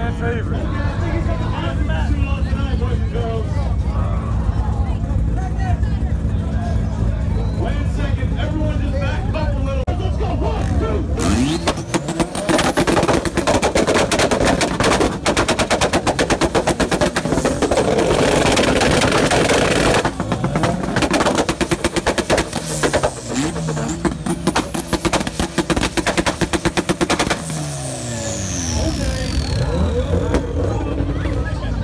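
A tuned car engine idling, then revved hard from about 11 seconds in, with a rapid string of exhaust pops and bangs as it bounces off the limiter, its pitch rising and falling for over ten seconds before easing off near the end.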